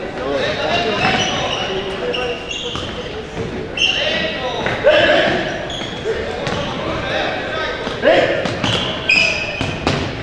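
Futsal game in a gym: players shouting to one another, with the ball thudding off feet and the hardwood floor, all echoing in the large hall.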